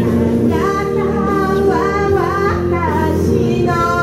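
A woman singing a slow melodic line live into a handheld microphone over instrumental accompaniment; her voice slides between notes in one phrase, then starts a new held note near the end.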